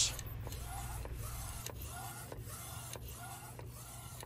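Inkjet DTF printer running with its print carriage moving back and forth. There is a short motor whine and a click at each pass, repeating steadily.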